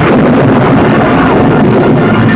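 Loud, dense, steady roar of a film battle soundtrack, a continuous wash of noise with no single sound standing out.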